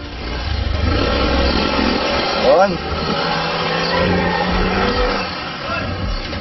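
Yamaha motor scooter's engine running and revving up as it pulls away, its pitch rising about two and a half seconds in, then holding steady.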